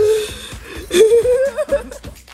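A man's high, wavering whimpering cry, a short one at the start and a longer, wobbling one about a second in, from the burn of eating spicy Korean instant noodles.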